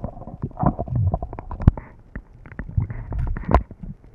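Muffled underwater noise picked up by a camera in its waterproof housing while a freediver swims: low rumbling water movement with irregular knocks and clicks, the sharpest one a little after a second and a half in.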